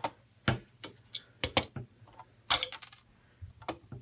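Hard LEGO plastic pieces clicking and clacking as the model truck's hood is handled: a series of sharp separate clicks, with a quick cluster of clatter about two and a half seconds in, as a small piece, the hood emblem, is knocked loose.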